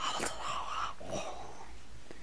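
A person whispering: two short breathy phrases in about the first second and a half, too faint to be transcribed.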